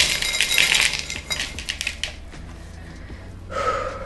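Pon, a granular mineral potting mix, rattling and clinking as it spills out of a clear vessel into a plastic basin while the hoya is tipped out. The clicking is dense for about two seconds, then thins out. A sigh comes near the end.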